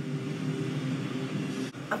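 A low, steady drone from the TV episode's soundtrack, with a single sharp click near the end.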